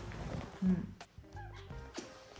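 A newborn baby making a couple of small, faint vocal sounds as he wakes, over background music; an adult hums a short "mm" about half a second in.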